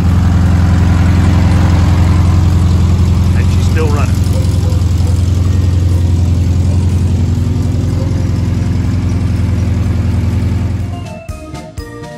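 VW Beetle's air-cooled flat-four engine idling steadily. It gives way to piano music about a second before the end.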